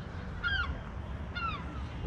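A bird honks twice, about a second apart. Each call is a short note that rises and falls in pitch, heard over a steady low rumble.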